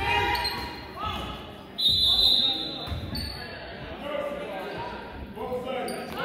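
Referee's whistle: one steady, high-pitched blast of a little over a second, starting about two seconds in and the loudest sound here, over voices from players and spectators in the gym.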